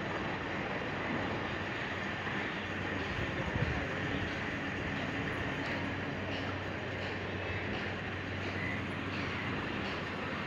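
Steady rumble of distant motorway traffic, an even noise with a low hum beneath it that holds level throughout.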